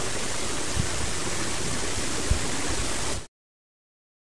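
Steady hiss of background noise with a couple of faint low bumps. A little over three seconds in it cuts off abruptly to dead silence, an edit in the sound track.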